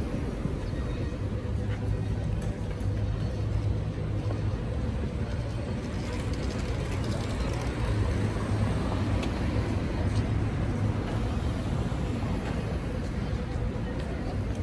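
Street traffic: cars driving past with a steady low rumble of engines and tyres.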